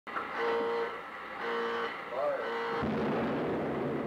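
Intro audio: a voice in three drawn-out phrases held at a steady pitch, then a deep rumble that swells up almost three seconds in and carries on.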